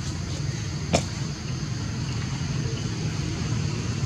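Steady low outdoor rumble, with one sharp click about a second in.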